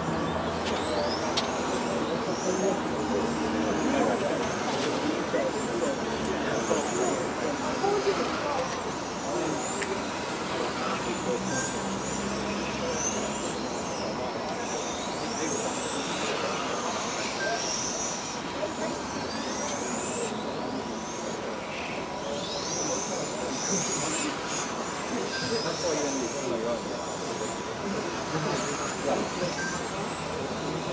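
Electric 1/10-scale touring cars with 17.5-turn brushless motors racing round the circuit: repeated high-pitched whines rise and fall as the cars accelerate and brake through the corners, over a steady background hiss and a faint murmur of voices.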